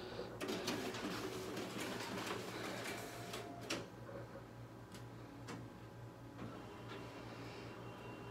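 Xerox WorkCentre 7830 color copier running a double-sided copy job, its document feeder drawing the original through: steady mechanical running noise starting about half a second in, with a few sharp clicks, quieter in the second half.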